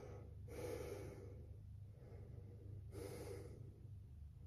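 A woman breathing audibly while holding a yoga boat pose: two slow breaths, one about half a second in and one about three seconds in, over a faint steady low hum.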